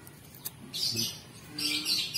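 A small bird chirping: two quick bursts of high twittering, about a second in and again near the end.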